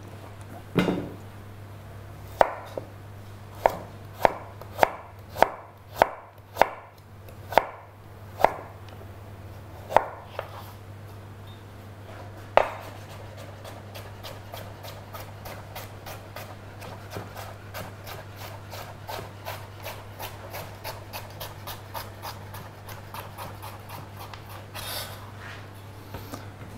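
Chef's knife cutting a carrot on a plastic cutting board, preparing julienne strips. About a dozen separate, sharp cuts come first. Then, from about halfway through, a quick even run of lighter knife taps on the board.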